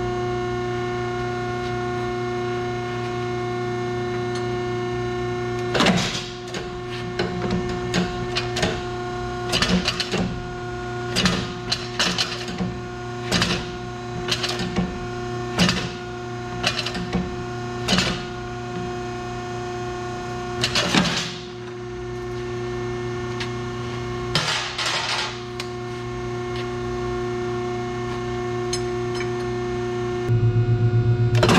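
Steady machine hum, made of several tones, from a hydraulic U-bolt bender's power unit running. From about six seconds in there is a run of sharp metallic clinks and knocks, roughly one a second, with a short clatter near the end, as a steel threaded rod is handled and set into the bender.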